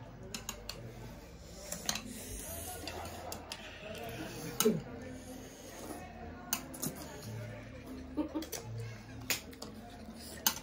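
Eating sounds: metal chopsticks clicking now and then against plates while noodles are slurped and chewed, with a few faint murmurs of voice.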